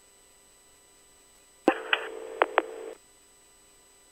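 Police two-way radio keyed with no voice: about a second and a half in, a click opens roughly a second of radio hiss with a steady tone and two brief clicks, then it cuts off.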